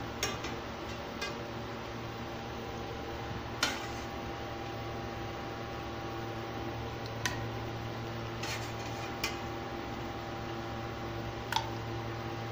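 A few scattered light knocks and clinks of kitchenware against a pan as pieces of lamb brain are put into the marinade, the sharpest about three and a half seconds in, over a steady low hum.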